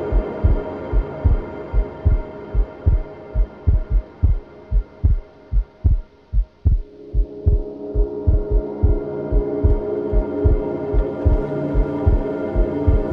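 Background music: a deep, heartbeat-like thumping bass pulse, about two or three beats a second, under sustained synth chords. The chords drop away briefly around the middle and swell back in about seven seconds in.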